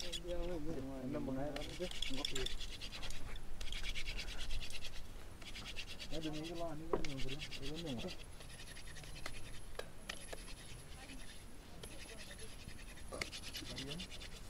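Hand fire drill: a hardwood spindle twirled back and forth between the palms, its tip grinding in the notch of a softwood hearth board, making a rapid, scratchy rubbing in runs of a second or two with short breaks between. The friction is heating the wood to produce an ember, just before smoke appears.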